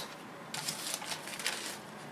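Faint rustling and light crinkling, a few soft scattered clicks, from elastic and materials being handled on a plastic-covered work table.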